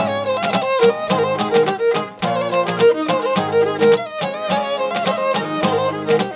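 Cretan lyra bowing a lively instrumental dance melody, accompanied by laouto and acoustic guitar playing a steady plucked rhythm.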